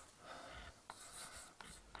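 Chalk writing on a blackboard: faint scratching with a few light taps as strokes are drawn.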